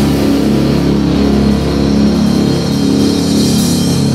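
Heavy metal band playing: distorted guitars and bass holding sustained chords over drums, with a cymbal wash fading through the first second.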